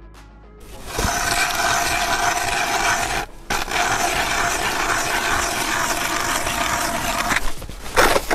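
Hand ice auger drilling a hole in frozen pond ice, its blades cutting the ice with a steady grinding as it is cranked round. The drilling starts about a second in and breaks off briefly just past three seconds.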